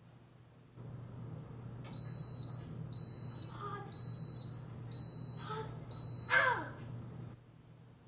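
A kitchen appliance beeping five times, about once a second, each a short high-pitched beep, over a steady low hum that starts about a second in and stops near the end. A brief louder noise comes just after the last beep.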